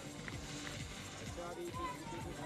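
Music and a faint voice in a stadium's public-address sound, with held notes in the second half.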